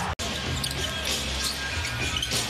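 Basketball being dribbled on a hardwood arena court, with arena music playing underneath. The sound drops out for a split second just after the start, then resumes.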